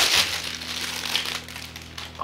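Clear plastic wrap crinkling as it is pulled off a mug. The crinkling is loudest right at the start, then thins to lighter rustling.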